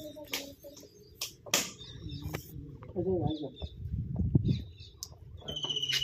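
A few scattered clicks and a low rumble on the microphone, then a short, high, rapidly pulsed trill near the end: a bird call.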